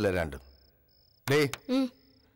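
Faint, short, high-pitched insect chirps, typical of crickets, repeating at an even pace as a background, under a brief spoken phrase.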